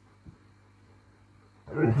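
Faint room tone with a low steady hum and one soft short knock, then a narrating voice begins near the end.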